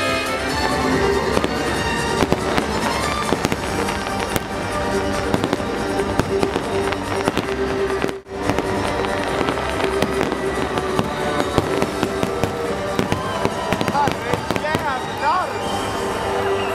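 Fireworks banging and crackling in rapid, dense succession over music, with a brief sudden drop-out about eight seconds in.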